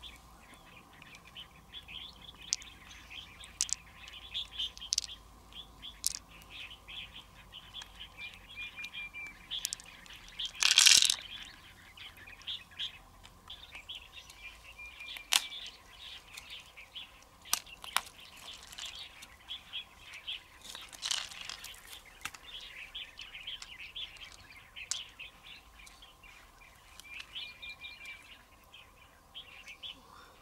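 Small birds chirping and calling on and off, with a few short whistled notes. Scattered sharp clicks and a louder brief scrape about eleven seconds in, from the mussel shells and knife being handled.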